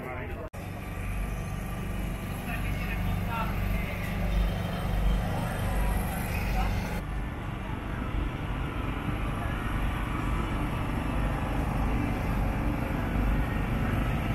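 Outdoor street-market background: a steady low rumble with faint voices of people around. The background changes abruptly about half a second in and again about halfway through.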